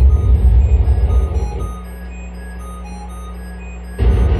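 Live electronic noise music from tabletop electronics and effects pedals: a loud, dense, rumbling low-end wall of noise that drops away about a second and a half in, leaving a quieter steady low hum with scattered short high blips, before the loud noise cuts back in suddenly at the end.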